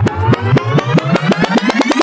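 Video-rewind sound effect: a stuttering whir that rises steadily in pitch, its pulses quickening over the two seconds.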